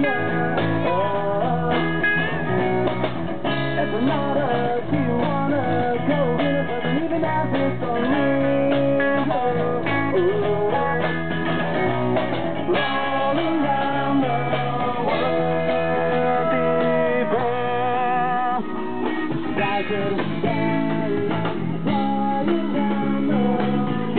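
Live rock band playing: electric guitars over a drum kit in a continuous song passage, with bending guitar notes.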